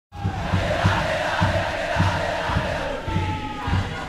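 Football stadium crowd chanting and cheering, with a steady low drum beat a little under twice a second.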